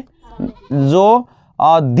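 A man speaking Hindi, drawing out one word about a second in.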